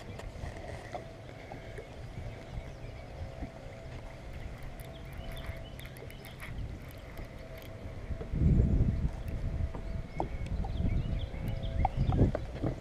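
Baitcasting reel being cranked while an angler fights a hooked striped bass, over low wind and water noise on the boat, with a steady thin whine throughout. A louder low rush comes about eight seconds in.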